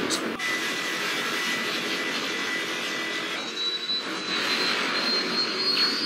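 Movie battle sound effects: a continuous dense roar of rapid gunfire and burning, with a thin high tone that rises slowly near the end.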